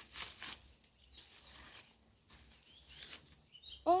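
Dried banana leaves and banana fibre rustling and crackling as a leaf-wrapped bundle is pulled open. The rustle is loudest in the first half second, with a few quieter rustles later.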